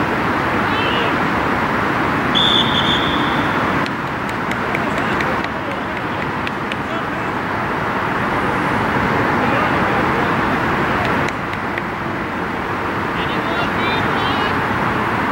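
A single short referee's whistle blast about two and a half seconds in, over steady outdoor background noise and scattered shouts from soccer players.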